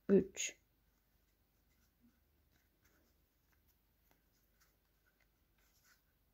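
Faint, scattered small ticks and rubbing of a metal crochet hook pulling yarn through crocheted stitches, after a brief burst of voice at the very start.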